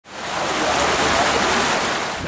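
Water rushing steadily over a small rock cascade in a shallow river, fading in from silence at the very start.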